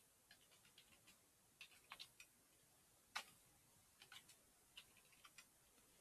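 Faint computer keyboard keystrokes: scattered clicks in short runs, with one slightly louder click about three seconds in.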